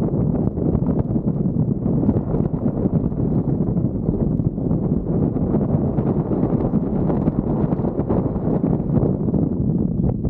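Airflow buffeting the microphone of a camera on a paraglider in flight: a loud, low, unpitched rush that rises and falls unevenly throughout.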